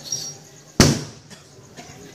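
A single loud, sharp bang about a second in, fading quickly, in a lull between stretches of music.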